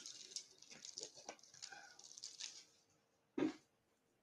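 Close, faint rustling and handling noise with small clicks for about three seconds, then a single short, louder sound about three and a half seconds in.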